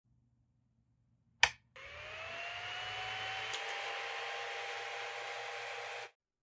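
A sharp click, then a small motor whirring up to speed, its pitch rising and then holding steady, before cutting off abruptly.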